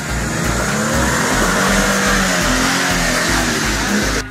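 Jeep Wrangler engine revving as it climbs, its pitch rising and falling, over background music with a steady beat.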